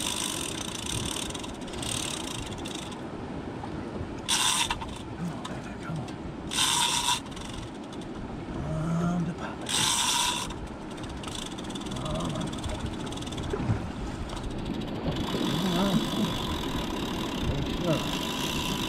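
Heavy fishing reel under load in a fight with a large fish, with three short, bright bursts of about half a second each, spaced a few seconds apart, of line pulled out against the drag.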